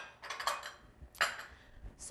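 Light handling sounds of kitchen utensils and a glass bowl on a counter: a soft rustle, then one sharp click a little over a second in.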